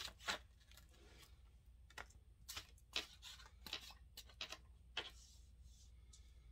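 A tarot deck being shuffled by hand: faint, irregular flicks and rustles of the cards sliding against each other.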